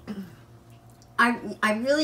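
A woman talking, starting a little over a second in, after a brief faint sound at the start.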